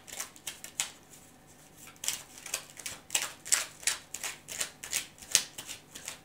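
Tarot deck being shuffled by hand, overhand style: a run of quick, irregular card taps and swishes, a few each second, with a short lull about a second in.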